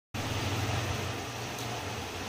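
Steady background noise: a low hum under an even hiss, with no voice or music.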